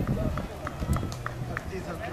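Indistinct voices in the distance over a low steady hum, with a few faint short clicks.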